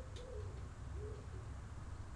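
A pigeon cooing faintly in the background: three soft, low coos in the first second or so. A light click sounds just after the start.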